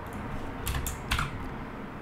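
Computer keyboard: a few short keystroke clicks about halfway through, as a line of code is copied and pasted.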